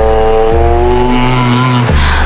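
Background music for an edit: a held synth chord over heavy, distorted bass notes that change about every half second.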